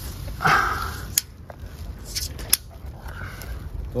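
Rustling handling noise in grass with two sharp clicks about a second and a half apart, after a short "ah" near the start.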